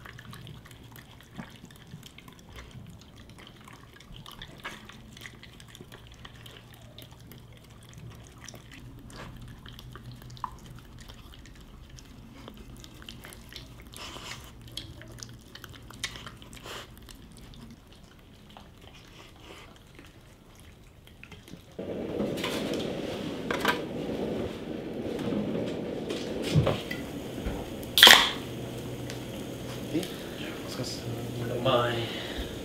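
Two shiba inu eating wet food from bowls: soft, wet chewing and lapping, with small clicks against the bowls. About twenty seconds in, a louder, even noisy background starts suddenly, and a single sharp, brief burst comes near the end.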